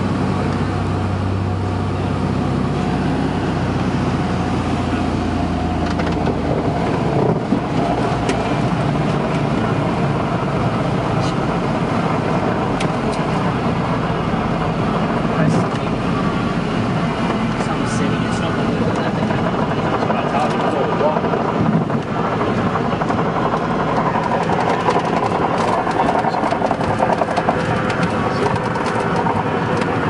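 Cabin noise of a small propeller plane landing on a sand beach: a strong low engine hum drops away about six seconds in, then a steady rushing rumble with many small knocks and rattles as it comes down onto and rolls along the sand.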